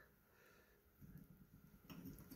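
Near silence, with faint low handling noise starting about halfway through as the bolt carrier group is turned in the hands.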